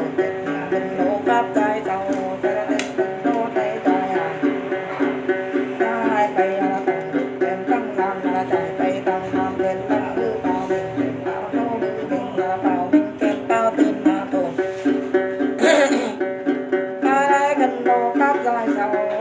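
Đàn tính, the long-necked gourd-bodied lute of Tày–Nùng Then ritual, plucked in a steady repeating figure of about three notes a second. A brief louder burst comes about two seconds before the end.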